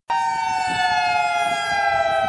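Outdoor warning siren sounding one long, steady wail whose pitch slowly falls.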